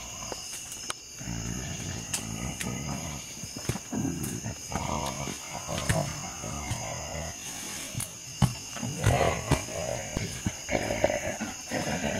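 Low, drawn-out growls and roars come and go, with insects trilling steadily behind them. Sharp clicks and rustling grow busier toward the end.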